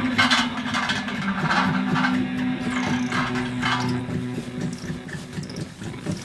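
A live band with electric guitars and bass plays a held, droning low chord. Several short bursts of scratchy, crackling noise cut in over it during the first four seconds.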